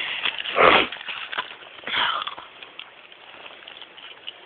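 Two short, noisy breaths or sniffs right at the microphone, the louder one about half a second in and a weaker one about two seconds in, then only faint background.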